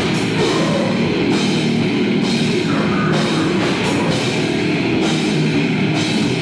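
Death metal band playing live: electric guitar, bass guitar and drum kit together, loud and dense, with the drums and cymbals coming in right at the start.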